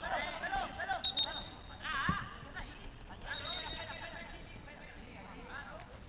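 Football players calling out to each other on the pitch, with two short, high-pitched whistles: the louder one about a second in, the other about halfway through. A single sharp kick of the ball is heard about two seconds in.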